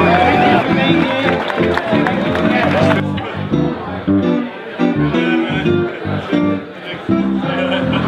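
Hollow-body electric guitar playing a run of single notes and chords, with people talking and laughing over it for the first few seconds.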